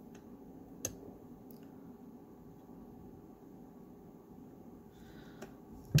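Small clicks and ticks of a metal spoon tool working crushed opal into a stainless steel ring, over quiet room noise: one sharp click about a second in, a few fainter ticks, and a stronger click at the very end.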